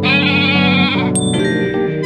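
A goat bleat sound effect, one wavering call of about a second, over light background music, followed by a short bright ding.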